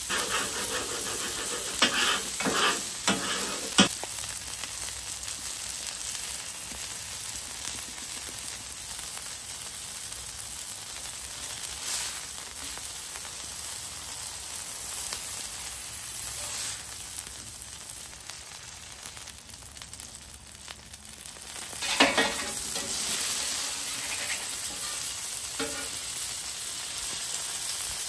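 Beef burger patties sizzling steadily on a hot steel flat-top griddle. There are short scrapes of a metal spatula on the steel about two to four seconds in, and the sizzle flares louder again about 22 seconds in.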